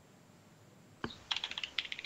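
Computer keyboard typing: a quick, irregular run of key clicks that starts about halfway through, after a second of near silence.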